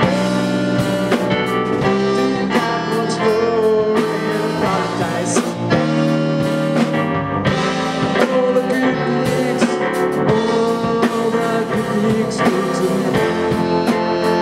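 Live band playing an instrumental passage: saxophone lines over drum kit, Hammond keyboard and guitar, at a steady beat.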